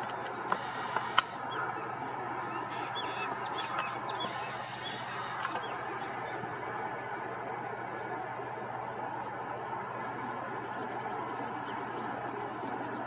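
Diesel-hauled express train running in the distance: a steady rumble. In the first few seconds there are a few sharp clicks and short bird-like chirps, and two bursts of hiss about a second long, one near the start and one about four seconds in.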